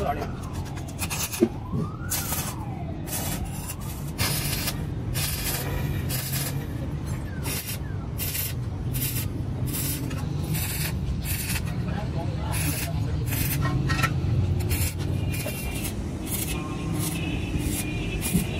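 Stick (arc) welding on a steel muffler: the arc crackles and hisses in repeated short bursts as the rod is struck and run along the joint, over a steady low hum.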